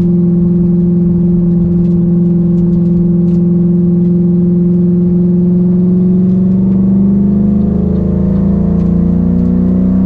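Ford Falcon GT's V8 engine heard from inside the cabin, running at a steady drone under light throttle. From about seven seconds in its pitch climbs steadily as the car accelerates.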